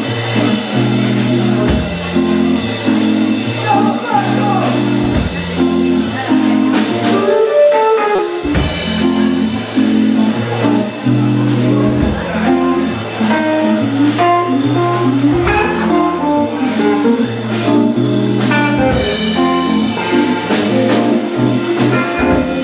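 Live funk band playing: drum kit keeping a steady beat under electric guitar, keyboard and a repeating low bass line. The bass drops out for about a second near the middle, then comes back in.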